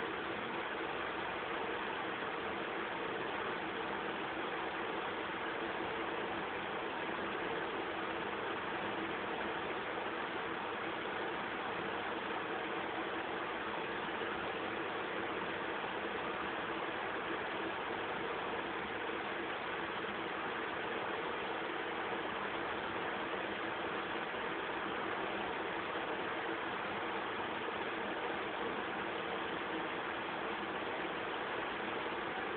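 Steady hiss like static or recording noise, with a faint low hum beneath it. It does not change and has no separate events in it.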